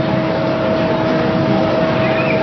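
Steady background noise with a faint steady hum, picked up by an open microphone.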